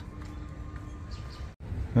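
Quiet outdoor street background with a faint steady hum, broken by a sudden brief dropout about one and a half seconds in.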